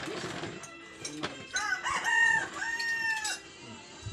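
A rooster crowing once: a few short rising notes about a second and a half in, ending in a long held note.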